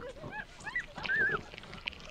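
A boy's high-pitched, wavering cries of distress: several short cries that rise and fall in pitch, the highest about a second in.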